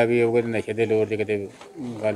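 A man's low voice drawn out in long, even tones, in two stretches with a short break about one and a half seconds in; no words are made out.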